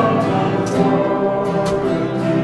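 Worship song: acoustic guitars strummed under a group of voices singing together.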